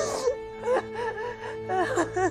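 A woman sobbing and wailing in distress, in broken cries that bend up and down, with sharp breaths between them. A steady music drone sounds underneath.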